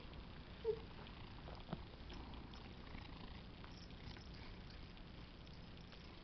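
Faint sounds of a cat handling a catnip toy close to the microphone: soft rustling and a few light clicks, with one short low sound just under a second in.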